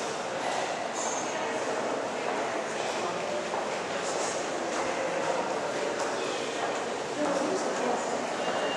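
Indistinct voices of people talking in a busy indoor public space, a steady general hubbub.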